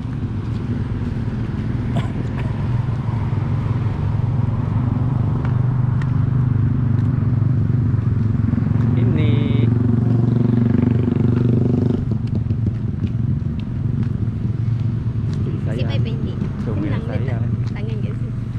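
Steady low rumble of road traffic, with a vehicle engine passing close between about nine and twelve seconds in and cutting off suddenly.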